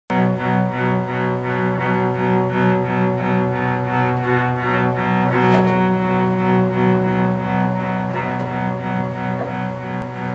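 Live acoustic band playing an instrumental introduction: held low notes under a steady pulse of notes about three times a second, with no singing yet.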